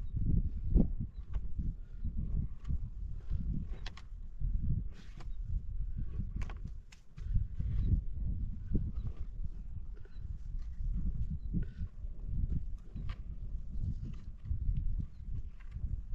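Shovel blade striking and scraping dry, stony soil in irregular strokes, with scattered clinks and knocks.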